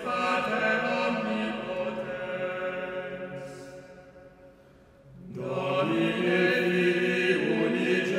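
Male vocal ensemble singing long, sustained chant-like chords that die away about four to five seconds in, followed by a new chord swelling in soon after.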